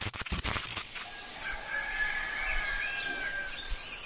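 A few light clicks, then a long, drawn-out bird call held for about two and a half seconds, with fainter short chirps above it.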